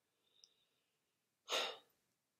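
A man's single short, audible breath, like a sigh, about one and a half seconds in, after near silence.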